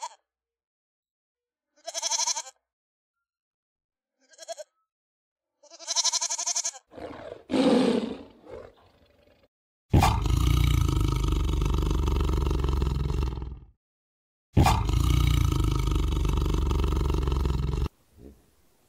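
Goats bleating: four short bleats, then a lower, drawn-out call. Then a tiger gives two long, loud roars, one about midway and one near the end.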